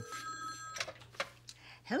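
Telephone ringing, a steady ring that stops under a second in, followed by a single click a little after the middle.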